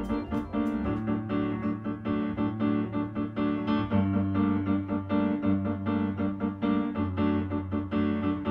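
Fazioli grand piano playing a rhythmic, repeated chord figure over held low notes that shift every second or two.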